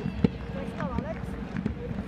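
Field-level sound of a rugby scrum being set, with a sharp knock about a quarter-second in and a few lighter knocks after. A brief shouted call comes about a second in.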